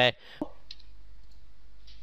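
A few faint, short clicks from a computer mouse and keyboard as form fields are edited, over a steady low hum from the recording.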